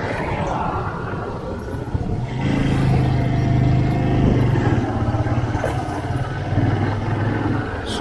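Motorcycle engine running while riding along a street, with road and wind noise. A steady engine tone comes up about two and a half seconds in and is loudest for the next couple of seconds.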